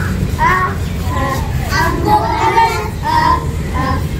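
Young children singing a phonic alphabet song together in short sung phrases, with a steady low rumble underneath.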